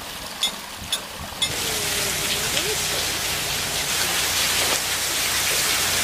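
Water pouring and splashing steadily from the buckets of a bullock-driven Persian wheel into its trough. It is preceded in the first second and a half by a few sharp clicks about every half second, typical of the wheel's gearing and buckets knocking.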